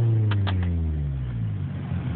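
Car engine heard from inside the cabin, its revs falling steadily over the first second and a half, then settling to a low, rough rumble.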